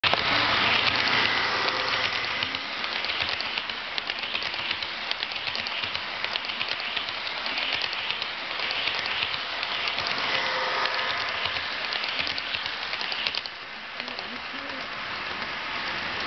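Electric model train running close by on sectional track: a steady rattling clatter of many small clicks from the wheels and rail joints, with a faint motor whine. The clatter drops off sharply about three-quarters of the way through.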